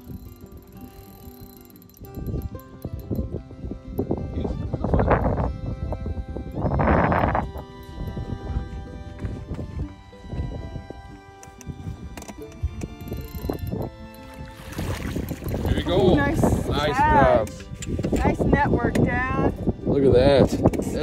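Background music with held notes, and excited wordless voices that grow louder and high-pitched in the last few seconds.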